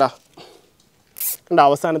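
A plastic cable tie zipped tight around a bundle of sparklers: one short, hissy ratcheting burst about a second in.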